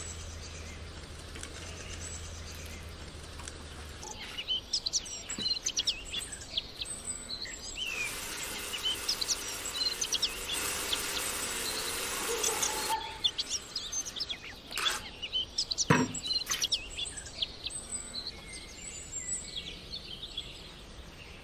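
Small birds chirping throughout, with a cordless drill's motor running steadily for about five seconds in the middle as it twists a cord, and a single sharp knock a few seconds after it stops.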